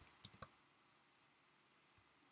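A quick, faint run of about four computer keyboard clicks within the first half second.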